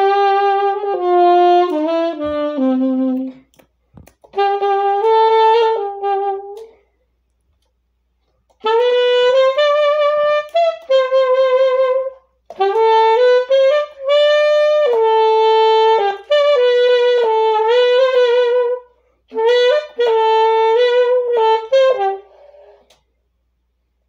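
Unaccompanied saxophone playing a slow melody in phrases, with short breaks for breath between them and vibrato on the held notes.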